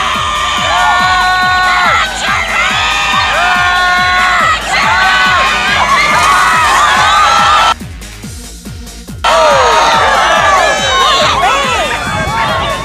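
A crowd of spectators cheering and shouting, many high voices calling over one another; the din drops away suddenly for about a second and a half near two-thirds through, then comes straight back.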